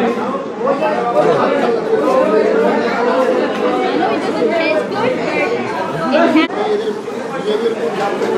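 Chatter of many people talking at once in a busy eatery, a steady babble of overlapping voices.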